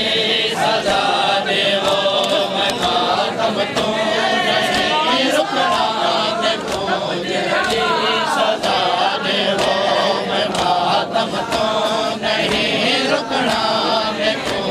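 A crowd of men chanting a noha together in unison, with sharp slaps of hands on bare chests (matam) beating a steady rhythm under the singing.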